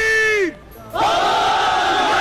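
A single voice shouts one long held call, and about a second in many voices answer together with a long unison shout: a call-and-response battle cry from massed troops.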